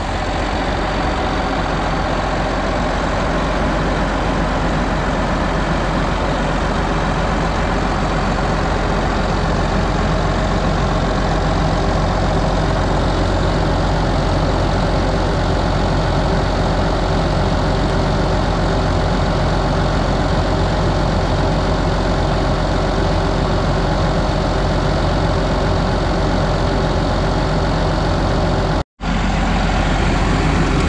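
A tractor's diesel engine running steadily, with no change in speed.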